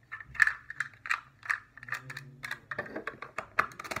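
Plastic LEGO bricks clicking and snapping as a brick section is pressed onto a build and the model is handled: a rapid, irregular run of sharp clicks, the loudest about half a second in.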